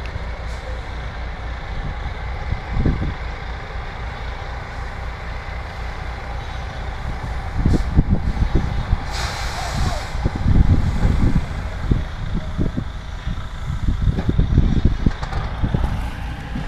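A heavy vehicle's engine running with a steady low rumble, with a short hiss about nine seconds in and uneven low surges in the second half.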